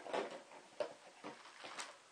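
Light clicks and rustles of a clear plastic bottle and black poly tubing being handled, a few faint taps spread over about two seconds.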